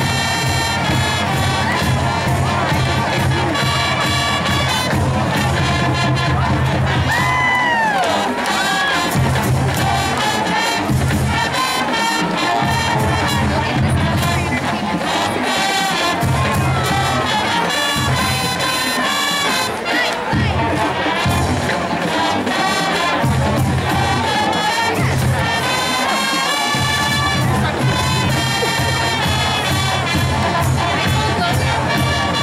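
High school marching band playing its school fight song, brass and saxophones over a steady drum beat, with a crowd cheering and shouting along.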